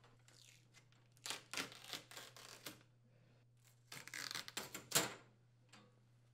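Adhesive tape being peeled off the metal side of a wall oven's frame: two stretches of ripping, the first starting about a second in and the second near the end, with a sharper rip at its close.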